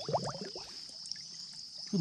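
Quiet stream-bank ambience: faint water trickling under a steady high-pitched hum, with a brief voice sound right at the start.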